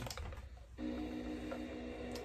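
Playskool toy cassette player: faint clicks as it is started, then, a little under a second in, a steady held chord begins playing through its small built-in speaker: the opening of a song on tape.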